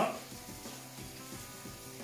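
Kitchen tap water running over chopped lettuce in a bowl as it is rinsed: a steady, faint hiss, with faint background music.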